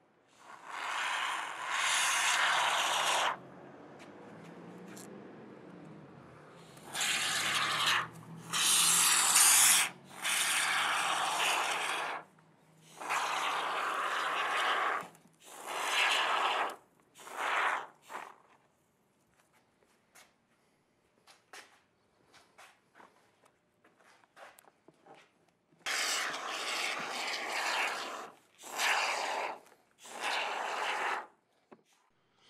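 A can of Great Stuff expanding spray foam hissing as foam is dispensed through its straw applicator, in about ten bursts of one to three seconds each. A quieter stretch of several seconds with small clicks falls in the middle.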